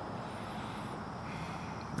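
Steady, low background noise (room tone) with no distinct events.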